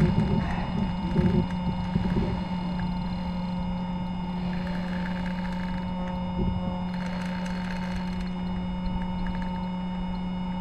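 Bow-mounted electric trolling motor running with a steady hum, with faint voices in the first two seconds.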